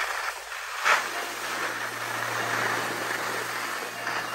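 Skis sliding over groomed snow, with wind on the microphone, while skiing downhill: a steady rushing noise, joined about a second in by a steady low hum.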